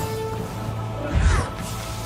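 Film score music with a sudden crashing impact effect a little over a second in.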